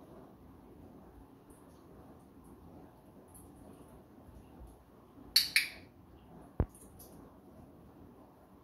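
A dog-training clicker pressed once, giving its two-part click-clack a little over five seconds in, the marker for the dog's correct response. About a second later comes a single short knock.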